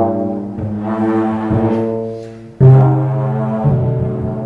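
Trombone playing sustained notes together with a double bass, with a sudden loud low note entering about two and a half seconds in.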